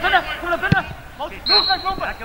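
Players' and spectators' voices calling out on a football pitch, with one sharp thud of a football being kicked a little under a second in. A short, steady high whistle-like tone sounds near the end.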